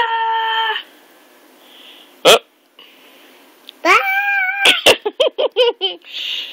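A baby's high-pitched squeals: one held squeal at the start, a rising then held squeal about four seconds in, and a quick run of short squeaky bursts near the end. A single sharp click about two seconds in.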